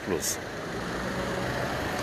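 A car's engine and road noise heard from inside the cabin while driving, a steady low hum that grows slightly louder.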